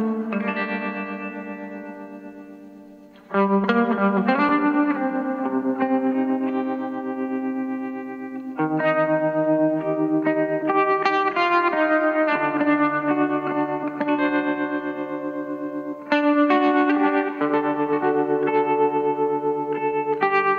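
Instrumental song intro led by guitar played through effects with echo: rapidly picked notes over held chords. A chord rings out and fades over the first three seconds, then the full playing comes back in.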